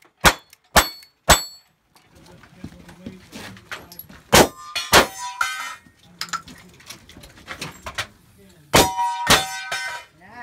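Gunshots from a cowboy-action stage: three quick shots about half a second apart at the start, then two more near the middle and two near the end. Each hit on a steel target rings out with a clear metallic ring.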